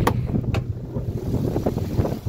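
The Vortec 5.3 V8 of a 2001 GMC Yukon idling steadily, heard with the hood open. Two sharp clicks about half a second apart sound over it as the hood latch is worked and the hood is raised.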